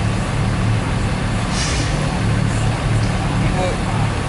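Street traffic: a heavy vehicle's engine running with a steady low rumble, and a short hiss about one and a half seconds in.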